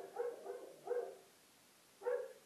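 A dog yipping: a few short, high barks in the first second.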